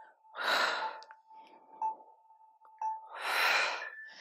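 A woman breathing hard during a fast squat exercise: two loud breaths, one about half a second in and one near the end. A faint steady tone sounds between them.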